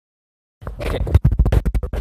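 Handling noise on a hand-held phone's microphone: rubbing and scratching that starts about half a second in, then turns about a second in into a quick run of a dozen or so short scratches as the phone is moved about.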